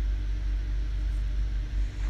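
Steady low-pitched background hum.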